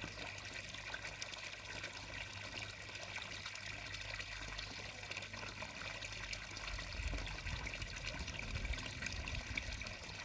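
Water trickling steadily from a pond pump's outflow into a garden pond. A low rumble comes in near the end.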